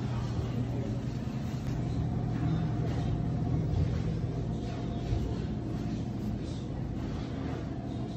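A steady low mechanical hum with a faint thin tone running through it, and no distinct events.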